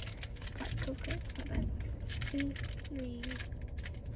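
Pokémon trading cards handled and shuffled in the hands: a quick, irregular run of light clicks and flicks as the cards slide over one another, over a steady low rumble.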